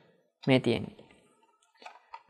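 A short spoken word, then a few faint clicks near the end as the plastic speaker unit is turned over in the hands.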